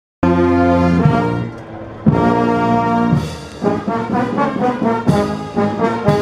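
Brass band playing a processional march, with tubas and trombones sounding full held chords. The sound cuts in abruptly. A new chord comes about two seconds in, and quicker moving notes follow in the second half.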